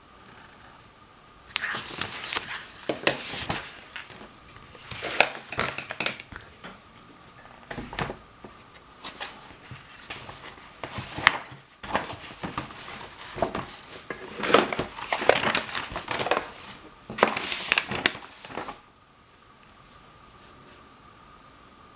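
Sheets of paper being handled and shifted, crinkling and rustling in irregular bursts from about a second and a half in until near the end. A faint steady high tone runs underneath.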